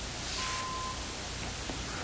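Steady hiss of an old film soundtrack, with one short, faint, steady beep that starts a little under half a second in and lasts about half a second.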